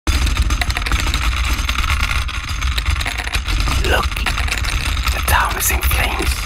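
Dark ambient electronic music: a low steady drone under a dense hissing, crackling noise layer, with short gliding tones about four seconds in and again just past five.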